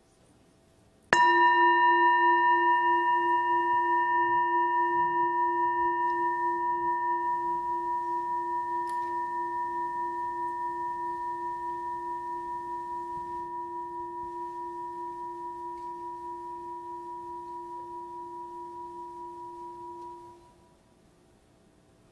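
Singing bowl struck once, about a second in, ringing with a low wavering tone and several higher overtones that fade slowly for nearly twenty seconds, then stops suddenly.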